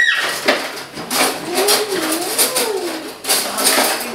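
Aerosol whipped-cream can spraying cream onto pancakes, in repeated sputtering hisses.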